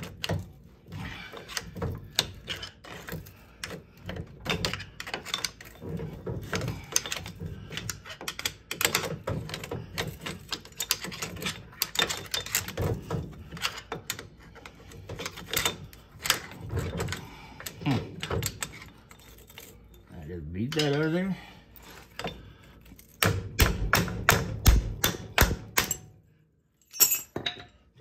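Hand wrench working the nut on a pipe-coupling puller, a long series of metal clicks as the nut is turned and the ball joint is drawn out of the steering knuckle. Near the end there is a quicker, evenly spaced run of clicks that stops about two seconds before the end.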